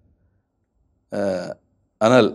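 A pause, then a man's voice makes one short, held syllable about a second in.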